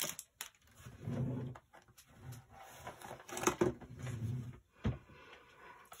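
Small plastic craft tools and packaging handled on a tabletop: a few scattered light clicks and rustles.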